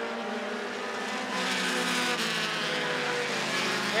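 Engines of several American Short Tracker stock cars running at racing speed around the oval, a pack of overlapping engine notes. The sound gets a little louder about a second and a half in, and some notes fall in pitch as the cars lift for the turn.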